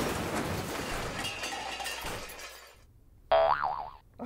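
Cartoon crash sound effect: a loud clattering crash that fades away over about two and a half seconds, followed near the end by a short wobbly boing.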